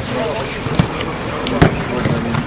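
A football being kicked during training: two sharp thuds of boot on ball, the second, about a second and a half in, the louder, with voices across the pitch.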